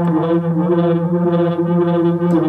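Waldorf Rocket synthesizer through a digital delay holding one steady low buzzing drone note, rich in overtones, with the upper overtones swelling and fading.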